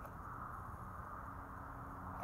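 Faint, steady background noise with no distinct event, and a faint low hum coming in near the end.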